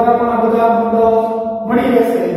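A man's voice holding a long, drawn-out, chant-like tone, with a short break near the end.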